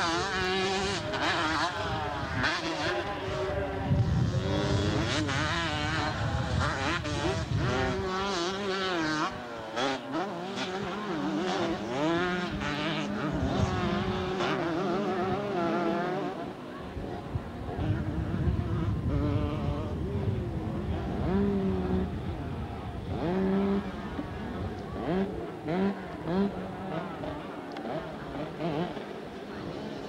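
Several 125cc two-stroke motocross bikes racing, their engines revving up and down over and over as the riders work through the gears, busiest in the first half.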